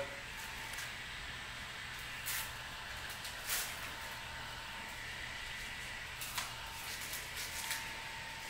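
Low steady hiss with a few faint, brief rustles as a fabric strap is fastened and adjusted around a leg.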